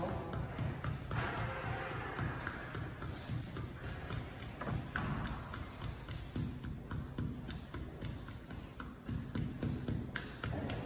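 Block stippling brush dabbed repeatedly against a wall coated with wet water-based glaze: a quick, uneven run of soft taps and thuds. The stippling evens out the glaze and takes out the roller marks.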